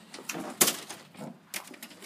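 Hinged display panels being flipped through by hand, their boards clacking against one another: a few sharp clacks, the loudest about half a second in and another at about a second and a half.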